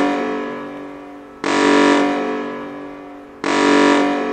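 Video-game style 'enemy detected' alarm sound effect: a synthesized alert tone repeating about every two seconds, each one starting abruptly and fading away slowly.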